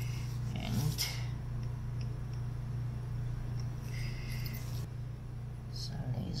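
Brief rustling and handling noises of small tools and the circuit board on bubble wrap, once about a second in and again around four seconds, over a steady low hum.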